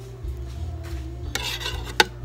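Metal spoon scraping and stirring raw eggs in a ceramic bowl: a short rasping burst starting about one and a half seconds in and ending in a sharp clink of spoon on bowl.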